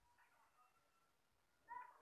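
Near silence: room tone, with one brief faint pitched sound near the end.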